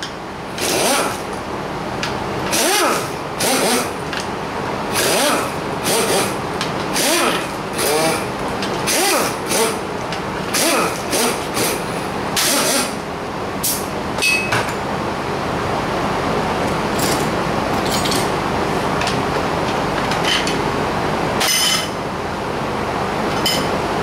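Short bursts of a pneumatic tool with hissing air, about one a second, running the nuts off the oil strainer plate of a VW 1600 engine; from about halfway through, a steadier background noise with a few sharp clicks.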